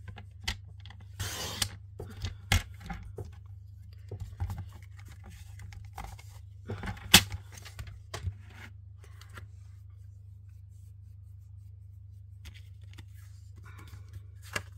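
A paper trimmer's sliding blade cutting through cardstock with a short rasp about a second in, followed by card being handled and set down: scattered taps and knocks, the sharpest one at about seven seconds. A steady low hum runs underneath.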